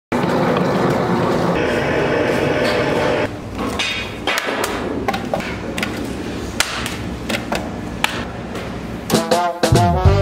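An ad soundtrack: a dense rush of noise for the first three seconds, then scattered sharp clicks and knocks. About nine seconds in, swing-style music with brass comes in.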